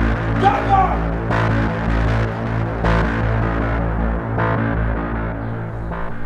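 Dark, droning film-score bed: a steady deep hum under layered sustained tones, with a soft pulse about every second and a half.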